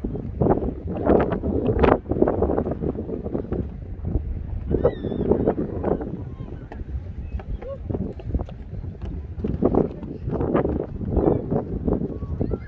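Wind buffeting the microphone in uneven gusts, with indistinct voices in the background and a brief high chirp about five seconds in.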